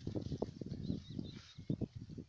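Irregular crackling and rustling of dry heather and grass brushing against a handheld camera as it pushes in through the vegetation. A few faint high bird chirps come in the first half.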